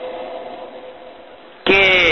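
A pause in a man's recorded lecture, filled with a faint steady hum and hiss. His speech resumes with a single word near the end.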